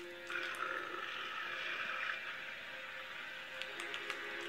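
Soundtrack of a hamster video playing through laptop speakers: background music with steady held notes, a rough hiss from about a quarter second to two seconds in, and a few sharp clicks near the end.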